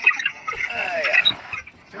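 Indistinct voices close to the microphone, with a knock of handling at the start.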